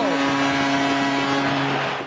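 Ice hockey arena crowd cheering while a horn sounds one long steady tone, the horn signalling the end of the game.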